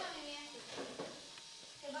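Faint children's voices murmuring in a quiet room, with one soft click about a second in.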